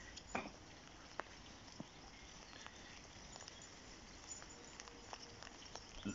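Near silence: faint outdoor background with a few short, faint ticks in the first two seconds.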